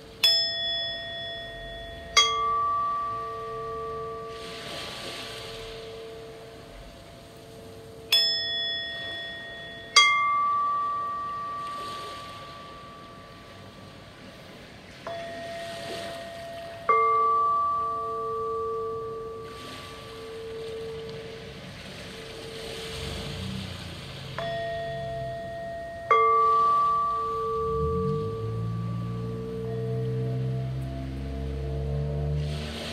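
Two singing bowls, a quartz crystal bowl and a brass Tibetan bowl, struck with mallets: four pairs of strikes, the second about two seconds after the first, each pair about eight seconds apart. Each strike rings with clear tones that fade slowly over a steady, gently pulsing hum.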